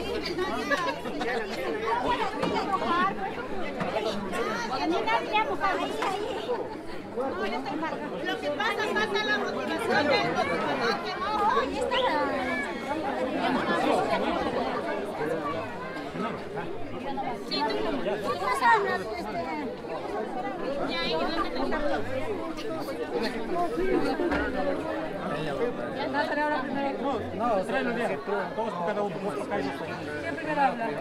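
Several people talking at once: overlapping conversation and chatter among a small group.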